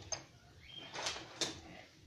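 A few faint clicks and knocks, two of them about a second in, with a brief high chirp before them.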